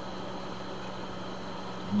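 Steady background hiss with a faint low hum, unchanging throughout: the recording's room and equipment noise between spoken sentences.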